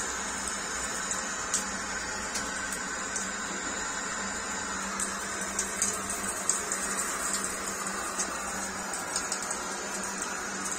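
Steady rush of running water in a small tiled room, with a low steady hum under it.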